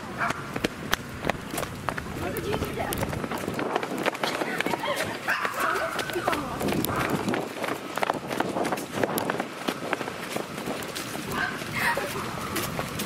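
Rapid footsteps on a concrete sidewalk as several people hurry along, with indistinct talking now and then.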